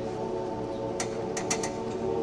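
Men's barbershop harmony singing, holding a sustained chord. A few short, sharp clicks sound over it in the second half.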